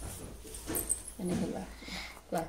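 Two brief, faint vocal sounds about a second in, over a low background hum.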